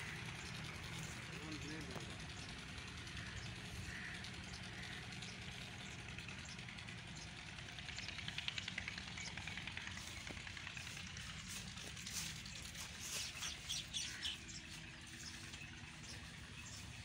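Rural outdoor ambience: birds chirping, loudest in a cluster of short chirps near the end, over a low steady hum, with a faint voice in the background.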